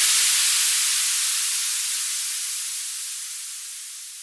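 The tail of an electronic dance music track: the beat has stopped and a wash of white-noise hiss fades out steadily.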